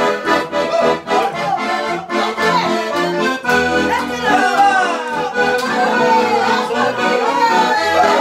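Two button accordions playing a lively traditional Portuguese dance tune, with a steady bass-and-chord beat under the melody.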